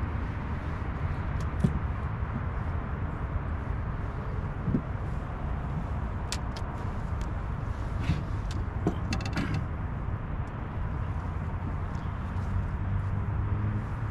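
A steady low motor hum, with scattered sharp clicks and light knocks of fishing gear being handled, most of them between about six and nine and a half seconds in.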